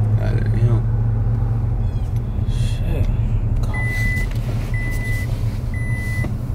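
Car idling with a steady low hum inside the cabin. A little past halfway the car's warning chime starts, short high beeps on one pitch about once a second.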